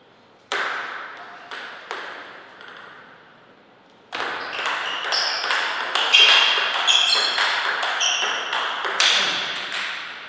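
Table tennis ball clicking: one sharp click about half a second in and a few single clicks after it, then from about four seconds in a fast rally of bat hits and table bounces, each click ringing in the hall.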